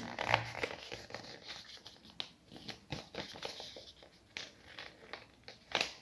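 A thick sheet of good-quality paper, already folded in half three times, being folded and creased again in the hands: faint crinkling with scattered sharp crackles.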